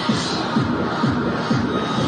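Electronic dance music with a steady beat of about two beats a second, played over a sports hall's sound system as accompaniment to a gymnastics floor routine.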